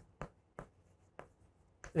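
Chalk writing on a chalkboard: four short, separate strokes as letters are written.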